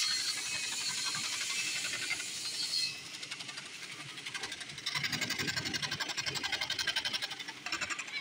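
Electric scroll saw ('Chapaka') with its blade cutting a curved pattern through a wood panel, a rapid, even run of blade strokes with a hissing rasp of the cut. It eases about three seconds in and picks up again, fuller, about two seconds later as the board is pushed on into the blade.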